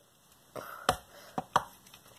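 A plastic Snap Circuits base board with snapped-on parts and AA batteries, lifted and shaken by hand to trip its S4 vibration switch: about four sharp clicks and knocks, the loudest just under a second in.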